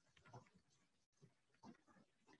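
Near silence, broken only by a few faint, brief soft sounds.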